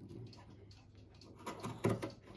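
Fabric scissors cutting through a knit sweater sleeve, with a couple of short, faint snips near the end.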